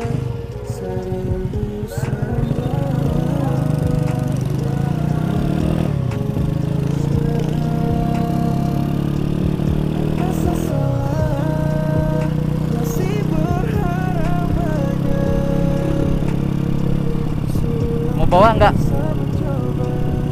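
Honda Astrea Grand small four-stroke motorcycle engine running steadily under way, its pitch dipping briefly about halfway through, with music playing over it.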